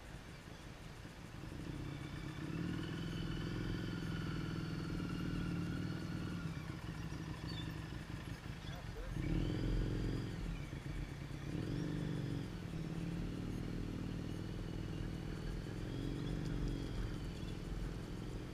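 Motorcycle engine running at low revs while the bike is ridden slowly, its note rising and falling gently. It grows louder about a second and a half in and again around nine seconds in.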